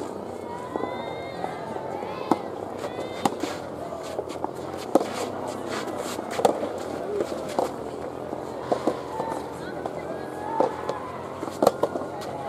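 Soft tennis rackets striking the soft rubber ball in a rally, a series of sharp pops, with voices calling out in the background.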